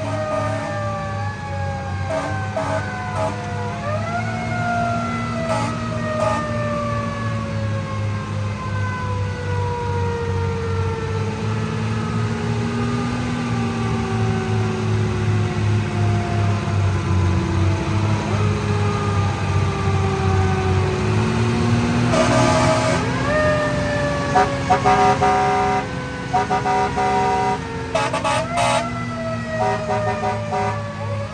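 Federal Q mechanical siren in a long falling wail as it winds down, spun back up twice with a quick rising whoop, over the low steady running of a fire engine's engine.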